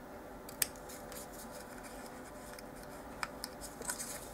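Small craft scissors snipping thin kraft cardstock: a few faint, short snips, the sharpest about half a second in and several more near the end.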